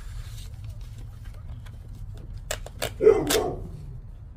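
A dog barks briefly, loudly, about three seconds in. Just before it come a few sharp clicks from scratch-off tickets being handled on a wooden table.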